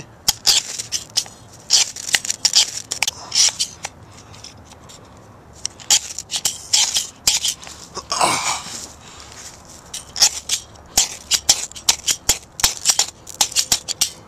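Blast Match ferrocerium-rod fire starter struck repeatedly: runs of quick, sharp rasping scrapes with short pauses between them. The strikes are not lighting the pine-needle tinder.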